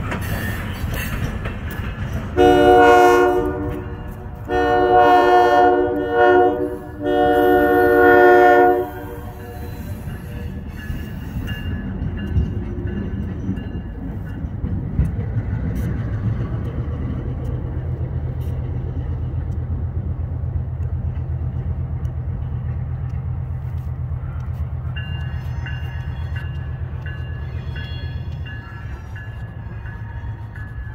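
A diesel switcher locomotive's horn sounds a long, long, short, long pattern, the grade-crossing signal, as it pulls a local freight away. Its engine then runs with a steady low drone. Fainter horn notes follow near the end as it recedes.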